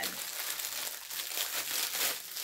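Plastic packaging crinkling and rustling continuously as it is handled, with many small crackles.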